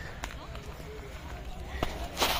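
Outdoor ambience while walking: a steady low rumble of wind on the phone's microphone, faint voices in the background and a couple of footstep clicks.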